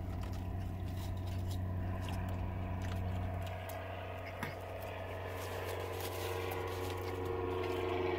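A man biting into and chewing a thick burger, with many small wet mouth clicks and one sharper click about halfway through, over a steady low hum in a car cabin.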